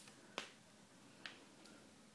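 Near silence broken by three short, sharp clicks, the loudest about half a second in.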